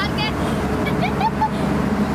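Hyundai 210 crawler excavator's diesel engine running steadily under load as the boom and bucket swing. Short chirping sounds, bird-like or distant voices, sit over the engine.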